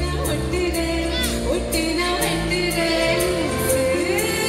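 Live band playing a song with a singer's voice carrying the melody, over a steady beat of about two cymbal strokes a second, heard from the audience seats of a large arena.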